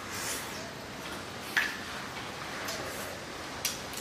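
Quiet eating sounds from two people at a table, with two light clicks of a spoon or chopsticks against metal bowls, about one and a half seconds in and again near the end.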